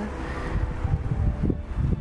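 Wind blowing across the microphone in uneven gusts.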